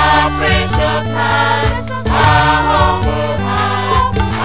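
Gospel song: a choir singing in harmony over a band with a steady bass line and a regular beat.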